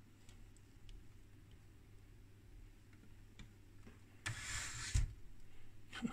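Faint handling noise over a low steady hum: a few soft ticks, then a short rustle and a dull thump about five seconds in.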